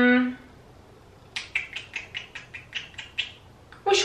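A woman's short closed-mouth "mmm" hum, then about a dozen quick short clicks in a run of about two seconds.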